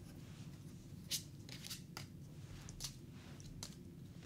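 Tarot cards being dealt one by one onto a table: a few faint, light card slaps and flicks, the sharpest a little over a second in, over a low steady room hum.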